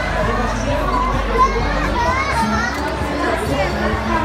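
Many young children's voices chattering and calling out over one another, with music playing underneath.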